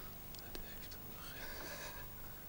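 Quiet studio with faint whispering.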